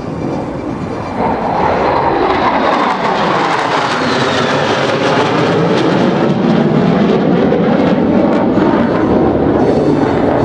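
Jet noise from two Navy F/A-18 Super Hornet fighters passing over. The rushing sound swells about a second in and stays loud, its tone sweeping downward as the jets pass.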